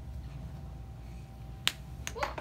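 A single sharp click near the end, from a magnetic counter being set against a whiteboard, over a low steady room hum.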